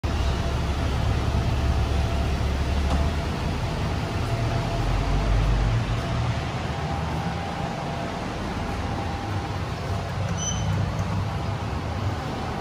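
Kone MiniSpace service lift running as a low, steady rumble that eases off after about six seconds. A short electronic beep sounds about ten and a half seconds in.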